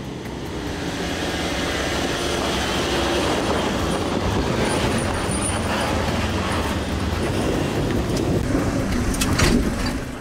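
A 4WD engine worked hard, driven with plenty of momentum up a steep, rutted bull-dust hill, getting louder over the first couple of seconds and then holding steady, with clattering from the vehicle over the ruts throughout.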